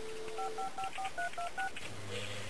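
Telephone dial tone that stops about half a second in, followed by touch-tone dialing: seven short keypad beeps, about five a second.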